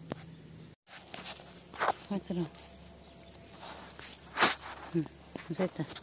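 Steady high-pitched insect chorus, with a brief cut-out about a second in, a few sharp clicks and short, quiet voice sounds.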